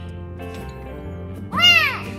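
A young kitten meowing once near the end: a single loud, high call that rises and falls in pitch, over steady background music.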